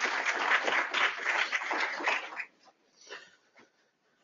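Audience applauding: dense clapping that dies away about two and a half seconds in, followed by a few last single claps.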